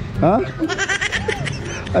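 A young woman giggling, several quick laughs in a row, with a brief 'Ha?' before it.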